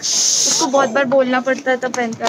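A short, loud hiss lasting a little over half a second, followed by a man talking.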